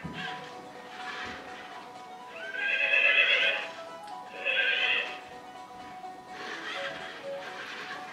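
Dash robot's built-in speaker playing a horse-whinny sound effect twice, the first call about two and a half seconds in and a shorter one about four and a half seconds in, while the robot drives along its programmed path.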